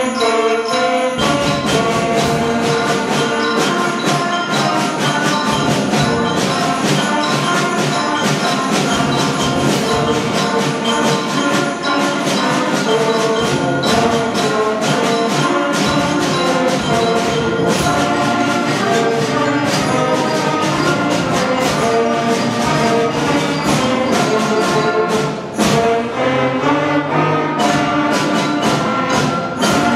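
A sixth-grade school concert band playing a Christmas piece: brass and woodwinds over drums and percussion, the full band's low end coming in about a second in.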